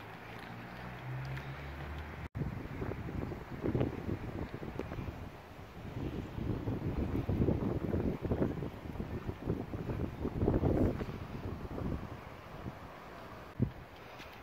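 Wind buffeting the microphone in uneven gusts that swell and fade, strongest in the middle and about ten seconds in, with one sharp knock near the end.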